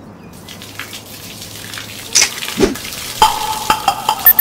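Garden hose spraying water, a hiss that grows louder, with sharp spatters and clicks from about halfway in as the water hits the surfaces.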